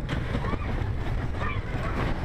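Mine-train roller coaster running along its track: a steady rumble and rattle from the train, with wind buffeting the microphone. Riders' voices are mixed in.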